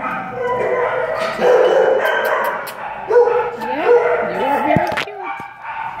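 Shelter dogs barking, yipping and howling in the kennel runs, several calls overlapping, with held howl-like notes up to a second long. There is a sharp knock about five seconds in.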